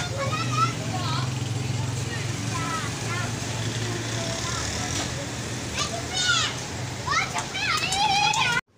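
Children's high voices chattering and calling out in short bursts, busier near the end, over a steady low hum.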